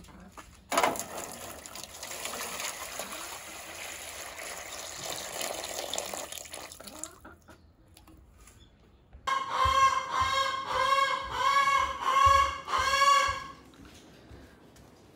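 Water spraying from a garden-hose nozzle into a metal water pan, starting with a burst and running steadily for about six seconds before it stops. After a short pause, a series of about six loud pitched animal calls follows, each rising and falling.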